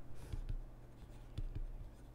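Faint scratching and light taps of a stylus writing by hand on a tablet.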